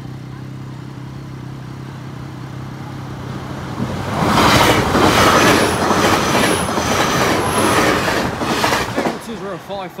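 LNER Class 800 Azuma train passing through the level crossing. Its sound builds over the first few seconds. From about four seconds in comes about five seconds of loud wheel-on-rail noise with a rapid run of clacks, which drops away near the end.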